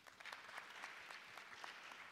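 Audience applauding: faint, dense clapping with many individual hand claps, easing off slightly near the end.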